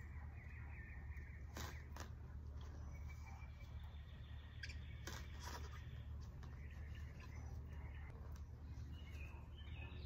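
Faint crunches and knocks of a lawn edging tool's blade cutting into grass turf and soil, a few strokes scattered through, over a steady low hum, with faint bird chirps.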